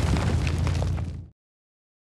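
Aftermath of an explosion: a heavy low rumble with scattered crackles, which cuts off abruptly just over a second in.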